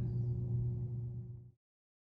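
A steady low hum with faint hiss in the background, which cuts off abruptly to dead silence about a second and a half in.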